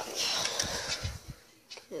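Rustling handling noise with a few soft bumps as the plastic hull of a toy RC boat is picked up and moved about. It fades out about halfway, and a single spoken word follows near the end.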